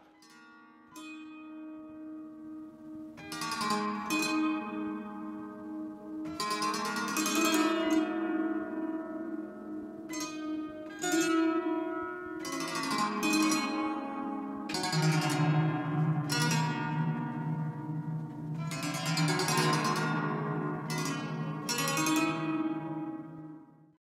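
Plucked wire strings of a large robot-played harp ringing: clusters of notes struck every second or two, each ringing on and decaying over the others, with a lower held note joining about fifteen seconds in and a fade-out at the end.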